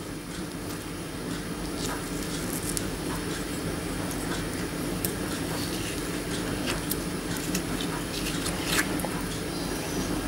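Teaspoon scraping the soft flesh out of halved kiwi skins, with soft wet squishing and a few light clicks of the spoon, over a steady low hum.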